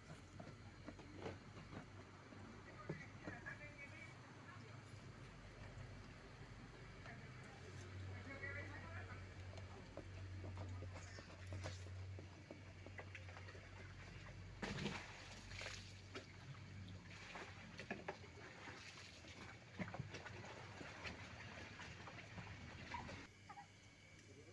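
Quiet handling sounds of a PVC drain fitting being worked into the bottom of a large plastic bucket: a few short knocks and scrapes, mostly in the middle and latter part, over a low steady hum and faint murmured voices.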